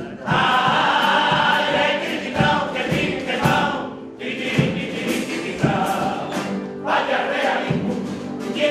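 A male carnival comparsa choir singing in harmony, backed by guitar and a steady bass drum beat, with a brief break between sung lines about halfway through.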